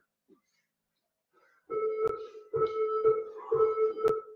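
Workout interval timer sounding its end-of-round signal: about four repeated electronic tones, each under a second long, starting about a second and a half in.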